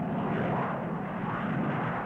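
Jet aircraft engines running, a steady rushing noise.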